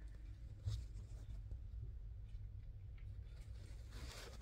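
Faint handling noise: a few soft clicks and rustles, the first about a second in, over a low steady rumble of room tone.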